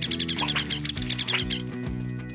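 Cartoon baby birds cheeping, a rapid string of short high chirps, over background music.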